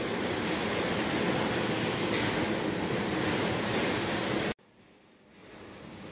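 Steady, even rushing background noise, like a fan or room hum, that cuts off suddenly about four and a half seconds in. Faint room tone follows.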